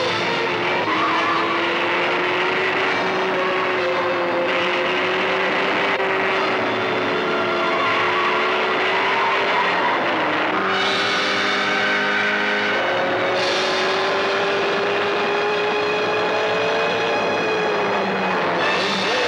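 Car engine running hard at speed, its pitch climbing slowly as the car speeds up, dipping briefly about ten seconds in and climbing again. Just after the dip, a chord of several held tones sounds for about two seconds.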